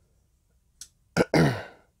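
A man clears his throat once, about a second in, after a quiet first half.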